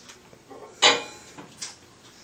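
Knocks from handling things at an open microwave oven: one sharp knock just under a second in, then a lighter click.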